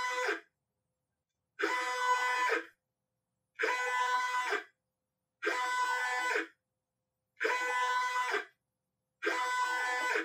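Stepper motor on a 16x microstepping drive moving a linear-stage carriage back and forth at medium speed. Each move gives a pitched, multi-tone whine lasting about a second, followed by a short silent pause, with six moves in all.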